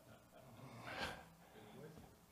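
A pause in near quiet, broken about a second in by one short, sharp intake of breath.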